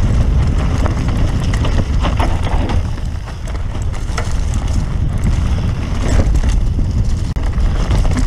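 Mountain bike riding fast down a loose dirt trail: heavy wind rumble on the camera's microphone over tyre noise, with frequent sharp clicks and knocks from the bike rattling over the ground.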